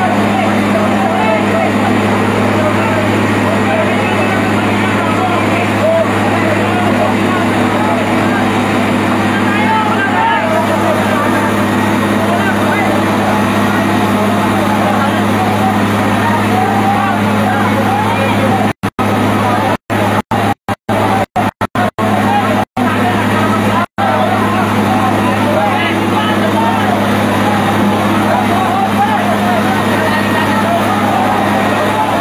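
A fire truck's engine running steadily with a constant low hum, under a babble of voices. The sound cuts out for split seconds several times between about 19 and 24 seconds in.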